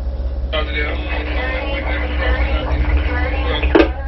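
A voice coming over a two-way radio, starting abruptly about half a second in with a steady hum under it and cutting off with a click near the end. The tugboat's engines drone low throughout.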